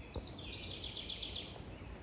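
A songbird's high, rapid trill: an evenly spaced run of short notes falling slightly in pitch, lasting about a second.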